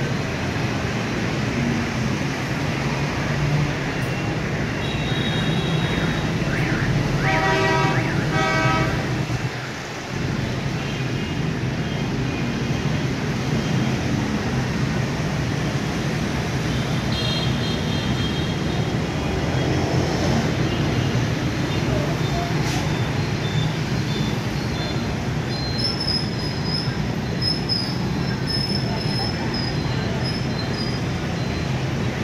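Steady city street traffic din, with a horn sounding in a series of short honks about seven to nine seconds in.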